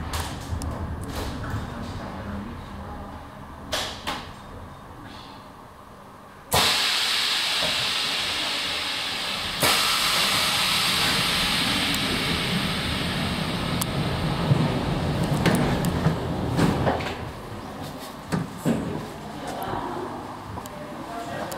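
1984 von Roll underground funicular car running in its tunnel and pulling into the upper station. A low rumble with a few clicks gives way, about a third of the way in, to a sudden loud hiss that steps up once more and holds for several seconds. It then eases back to rumbling and a few knocks near the end.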